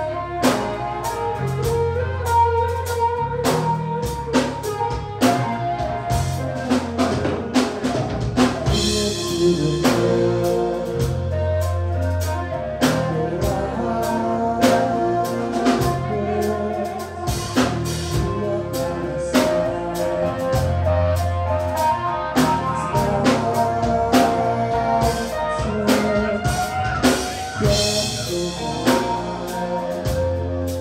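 Rock band playing live: drum kit, bass guitar and electric guitar together, loud and steady. There are bright cymbal swells about nine seconds in and again near the end.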